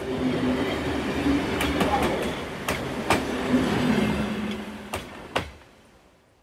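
A train running with a steady rumble and low hum, its wheels giving irregular sharp clicks over rail joints. It fades out near the end.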